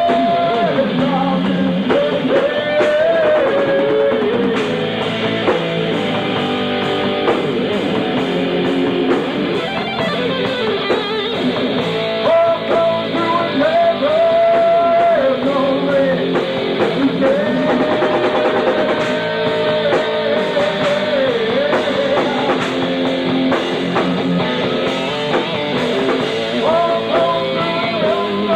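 Live rock band playing: electric guitar over a drum kit, with a lead line of long held notes that bend up and down.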